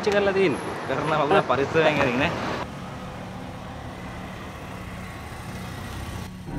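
A man talking loudly for about two and a half seconds, then it cuts abruptly to a steady low hum of a road vehicle.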